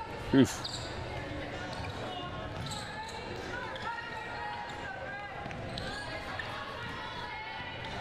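A basketball dribbled on a hardwood gym court during play, over a steady low murmur of crowd and faint voices in a large hall.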